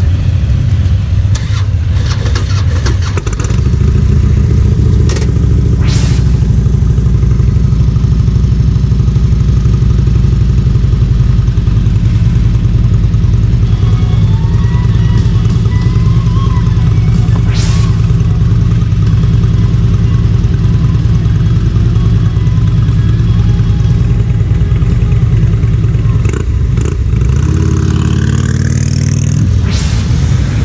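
Motorcycle engines idling together with a steady low rumble. Two sharp clicks stand out, about six seconds in and again some twelve seconds later. Near the end the engines rev and rise in pitch as the bikes pull away.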